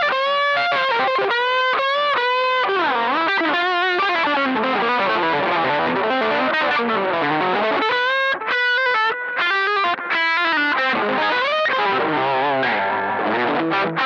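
Electric guitar played through an effects pedalboard with an overdriven tone: melodic lead lines with bent notes and wavering vibrato, broken by a couple of brief pauses in the middle.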